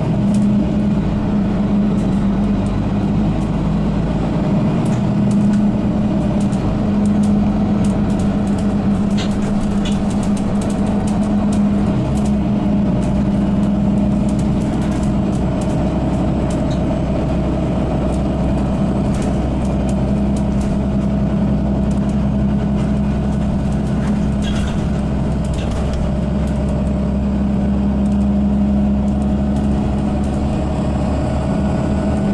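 Mercedes-Benz Citaro G articulated city bus with Voith automatic gearbox driving, heard from inside the passenger saloon: a steady diesel engine and drivetrain drone with road noise. The lowest part of the drone changes about twelve seconds in, and there are occasional light clicks and rattles.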